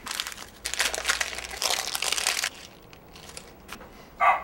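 Gift-wrapping paper crinkling and rustling as a present is unwrapped, in several dense bursts over the first two and a half seconds, then a few light rustles.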